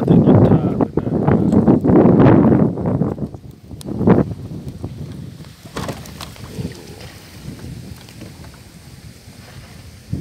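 Wind buffeting the microphone for about the first three seconds, then the quieter wash of river water around a bamboo raft being poled along, with a couple of short knocks.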